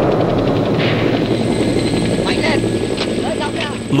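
Loud battle sound from war footage: the deep, rumbling roar of a large explosion and its fireball carries on, with a rapid rattle in the first second.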